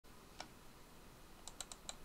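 Light clicks from a computer keyboard or mouse over faint room hiss: one click about half a second in, then four quick clicks close together near the end.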